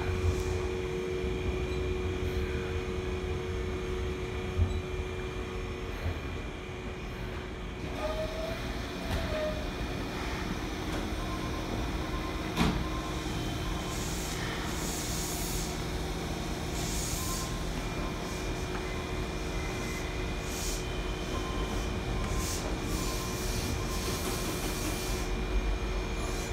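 A Semboku Rapid Railway electric commuter train pulling out of a terminus platform and rolling past, with a steady low rumble and, for the first few seconds, a steady hum. There is one sharp knock about halfway through, and short bursts of hiss in the second half as the last car goes by.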